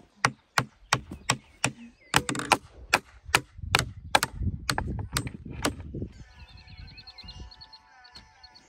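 Hammer blows on a wooden beam and its metal post base bracket: sharp strikes at about two to three a second, stopping about six seconds in. Fainter sustained high tones follow near the end.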